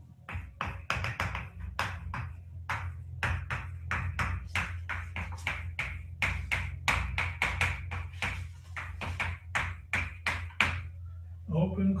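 Chalk writing on a blackboard: a quick, uneven run of taps and short scrapes as each letter is stroked out, stopping shortly before the end.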